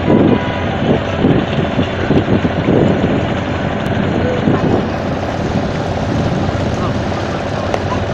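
A motorboat engine drones steadily. People's voices talk over it through about the first five seconds.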